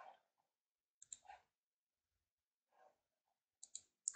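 Near silence with a few faint computer mouse clicks: a few about a second in and two more near the end.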